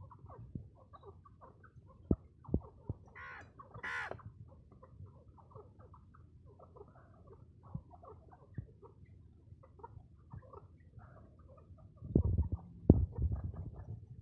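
White teetar partridges feeding from a metal grain bowl: sharp pecking clicks scattered throughout, soft clucking, and a brief higher-pitched call about three to four seconds in. Near the end comes a louder cluster of knocks.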